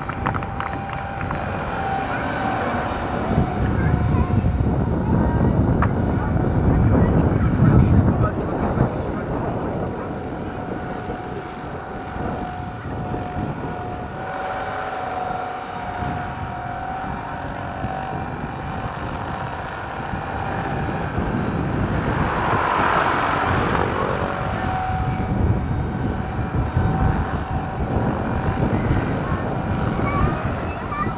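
Large electric-powered scale model tandem-rotor helicopter (1/7 scale CH-113 Labrador / CH-46 Sea Knight, Kontronik Pyro 850 motor) in flight: the chop of its two rotors over a steady high whine from the motor drive. The rotor noise swells loudest about four to nine seconds in as it passes close.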